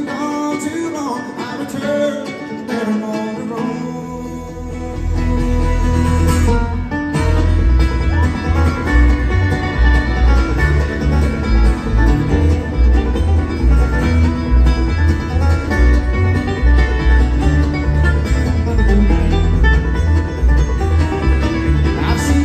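Live bluegrass band playing, with acoustic guitar and banjo picking. A deep bass comes in about four seconds in, and the music gets louder from there.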